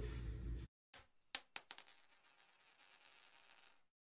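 A high, bright metallic chime with a few sharp clicks, starting about a second in and dying away by two seconds, followed by a fainter high shimmer near the end.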